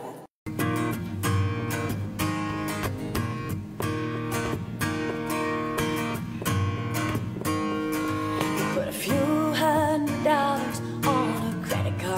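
Steel-string acoustic guitar, capoed, strumming a rhythmic chord pattern: the song's instrumental intro. It starts about half a second in, after a brief dropout.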